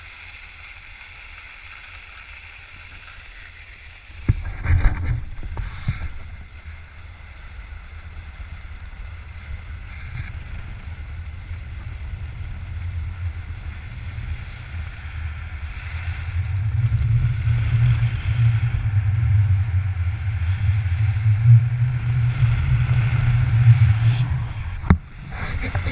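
Wind buffeting an action camera's microphone as a skier speeds down a groomed run, with the skis hissing over the corduroy snow. The low rumble starts abruptly about four seconds in and builds as speed increases, loudest near the end.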